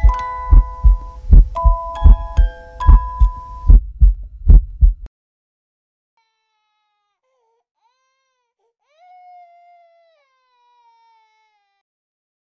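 Soundtrack of a slow heartbeat, a low double thump repeating about every second and a half, under a tinkling music-box melody. It cuts off suddenly about five seconds in, leaving near silence broken only by a faint wavering tone around nine seconds.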